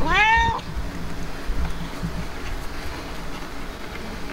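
Himalayan cat giving one short meow, rising in pitch, lasting about half a second.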